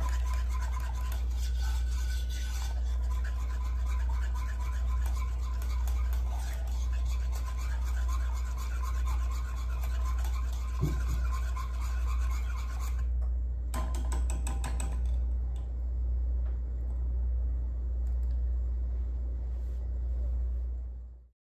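Wire whisk stirring a cream sauce in a pot, a steady rhythmic scraping against the pan that stops about two-thirds of the way through, followed by a short rattle. A steady low hum runs underneath.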